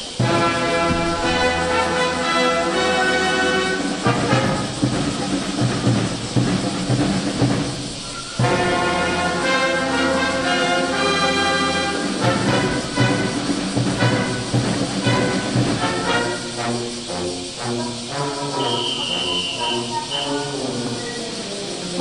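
Marching brass band playing: massed brass with sousaphones in sustained chords, with a brief break about eight seconds in before the music goes on.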